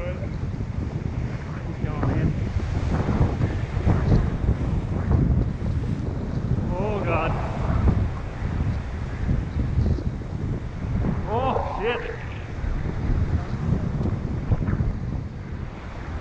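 Wind buffeting the microphone over ocean swell surging and washing across a rock ledge, rising and falling in gusts.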